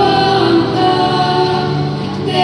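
A choir singing a slow hymn, the voices holding long notes.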